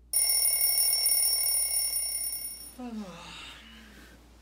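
Wake-up alarm ringing with steady high-pitched tones. It starts suddenly and cuts off after about two and a half seconds, followed by a man's sleepy groan that falls in pitch.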